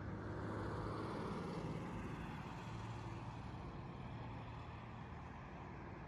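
A road vehicle passing on a nearby road: tyre and engine noise swells about a second in and slowly fades, over a steady low hum.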